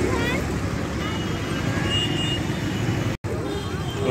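Steady road-traffic rumble with faint voices mixed in. The sound drops out abruptly for an instant about three seconds in and resumes as similar background noise.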